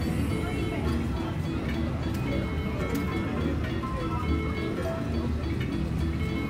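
Casino-floor din: electronic gaming-machine music and chimes sounding steadily over a background murmur of voices.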